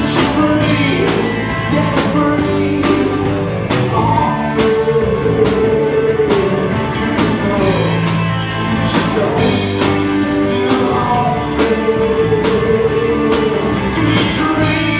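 A live rock band playing: electric guitar, electric bass and drum kit, with a steady beat of drum and cymbal hits.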